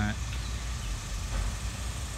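Steady low rumble of outdoor background noise from nearby construction work.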